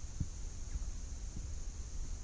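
Low rumble on the microphone with a few soft thumps, the clearest about a quarter second in, over a steady high hiss.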